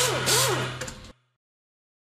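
Logo intro sound effect: a loud whoosh over a steady low hum, with swooping tones, fading out about a second in and then cutting to silence.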